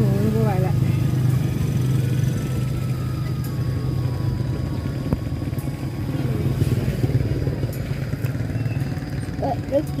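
A steady low engine hum runs throughout, with one short click about halfway through.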